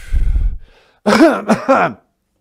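A man makes a loud, rough vocal noise right into the microphone, lasting about a second, then laughs briefly near the end.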